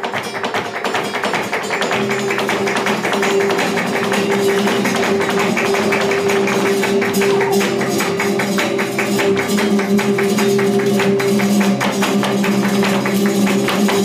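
Live flamenco seguiriyas: two flamenco guitars playing under a dense run of rapid, sharp strikes from the dancer's footwork and hand-clapping (palmas). The music builds in loudness over the first couple of seconds and then holds.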